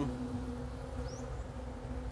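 A steady low buzzing hum that fades a little past halfway, with a faint short chirp about a second in.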